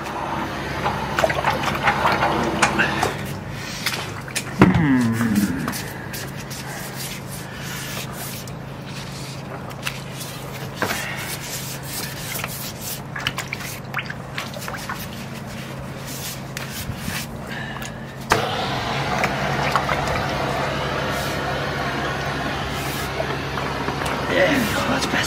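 Drain jetter hose working under standing wastewater in a blocked interceptor chamber: water gurgling and bubbling over a steady low hum of the jetting machine. About 18 seconds in it suddenly gets louder and stays louder. The water is not going down because the interceptor blockage has not cleared.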